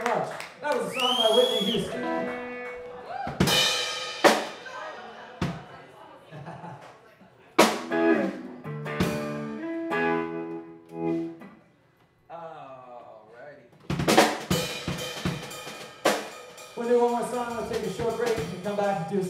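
Live rock band of electric guitars, electric bass and drum kit playing stop-start accents: sharp drum and cymbal hits, each followed by a ringing chord that fades away. Near twelve seconds the sound almost dies out before the band hits again.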